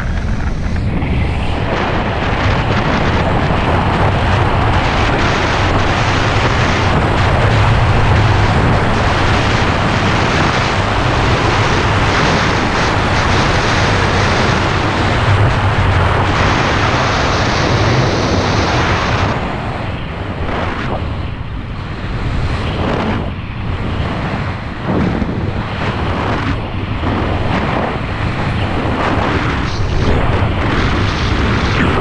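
Loud wind rushing and buffeting over the microphone of a skier's camera at speed, over the hiss and scrape of skis on groomed snow. About 19 seconds in the rush eases and turns choppy as the skier slows from the top speed of the run.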